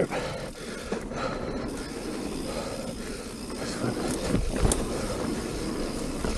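Mountain bike rolling down a dirt singletrack: steady tyre and riding noise, with a few sharp knocks and rattles from the bike over bumps, about a second in and twice between four and five seconds.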